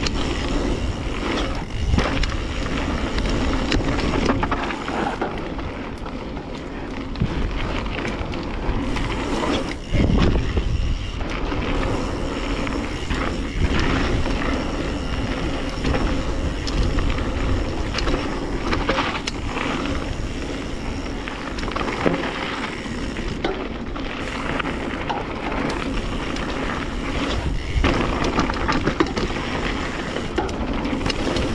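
Mountain bike riding down a dirt singletrack: tyres rolling over the packed, stony dirt with a steady noise, and the bike rattling and knocking over bumps and roots.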